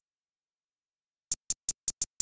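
Silence for over a second, then short, crisp electronic hi-hat sample hits, evenly spaced at about five a second.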